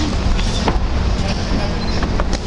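Steady low rumble of outdoor background noise, with faint distant voices and a few short knocks.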